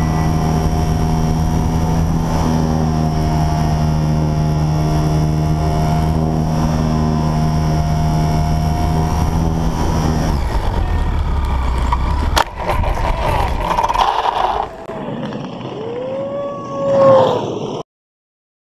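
Model airplane's motor and propeller running steadily with a faint high whine, then cutting out about ten seconds in. A sharp knock follows, then scraping on the road, and a brief rising-and-falling whine near the end is the loudest sound.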